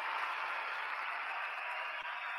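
Steady hiss of microphone room noise in a pause with no speech. The sound has no rhythm or distinct events.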